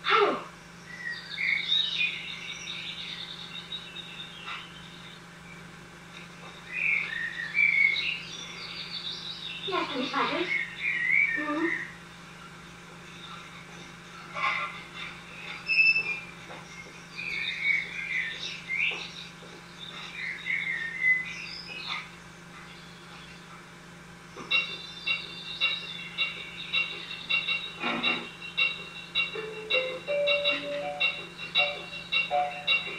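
High, wavering chirps and whistles, with a few long falling whistled glides. About 25 seconds in, music starts with steady high tones on an even pulse.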